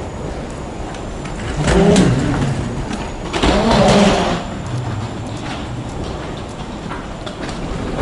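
Steady mechanical rumble of a moving escalator, with two louder bursts about two and four seconds in, the second a short breathy vocal sound.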